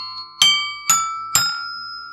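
Fisher-Price alligator toy xylophone's metal bars struck with a toy mallet, three notes about half a second apart, each ringing on with a pretty church-bell kind of sound.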